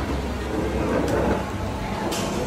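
Background noise of a busy indoor shop: a steady low hum with faint distant chatter, and a light click about a second in.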